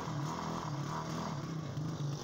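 Small single-cylinder engine of a motorcycle loader rickshaw idling steadily with a low, even hum.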